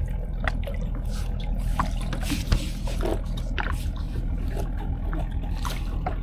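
Nylon gill net and freshly caught fish being handled at a boat's side: scattered small clicks, rustles and drips over a steady low hum.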